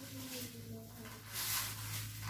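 Small slips of cut paper rustling softly as they are mixed by hand, over a steady low hum.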